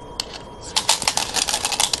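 Go stones clicking and clattering against one another, a rapid run of sharp clicks starting a little past the first third and lasting about a second, after a single faint click just before.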